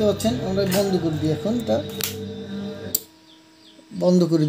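A song with a singing voice played through a 502 amplifier board and its speaker; it drops away for about a second near the end.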